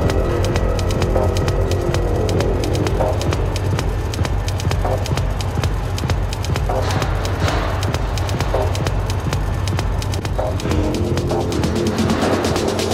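Music with a fast, even ticking beat over a deep steady bass and sustained tones.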